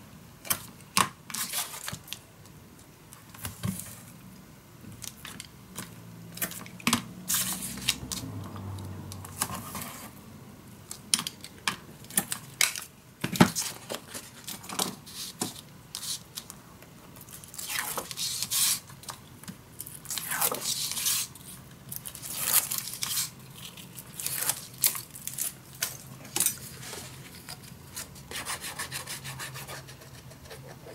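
Tape being pulled off a roll in short rasping strips, torn off and rubbed down onto paper edges, with scattered clicks and taps of handling.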